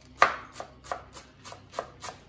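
Chef's knife chopping fresh cilantro on a wooden cutting board: about six quick, uneven strikes, the first the loudest.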